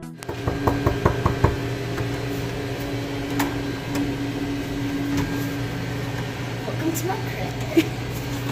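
Knuckles knocking on a hotel room door, a quick series of about five raps in the first second and a half, followed by a steady low hum.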